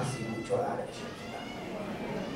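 A man's voice speaking through a microphone, with a thin, high, meow-like cry in the first half-second.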